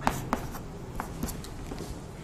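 White chalk writing on a chalkboard: a series of short taps and scratches as characters are written.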